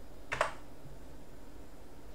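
A single keystroke on a computer keyboard, one short sharp click about a third of a second in, pressed to dismiss a boot prompt, over a faint steady low hum.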